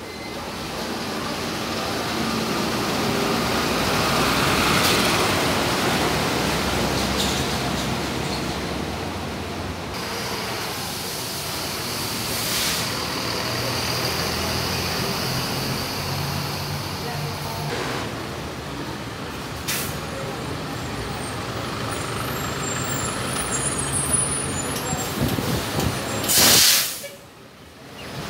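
City buses running through a terminal, with engine and road noise throughout. Near the end a bus lets out a short, very loud burst of compressed-air hiss.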